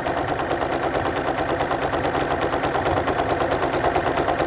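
New Home domestic sewing machine running fast during free-motion stitching, couching yarn down with monofilament thread. The needle goes up and down in a steady, rapid, even rhythm throughout.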